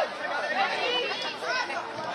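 Several people talking at once near the microphone: indistinct spectator chatter, no single voice clear enough to make out words.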